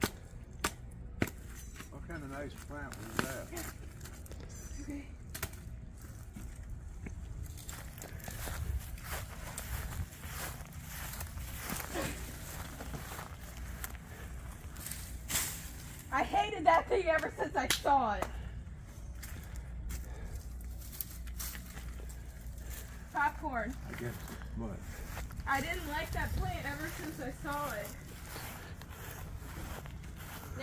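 A shovel chopping into garden soil and roots: scattered sharp strikes, with people talking briefly in the middle, the loudest part.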